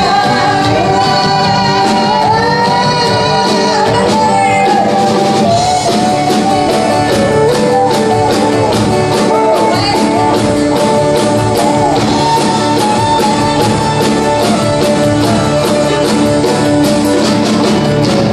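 Live country band playing with a steady drum beat, strummed guitars and a fiddle carrying a wavering melody, most likely an instrumental break in a song.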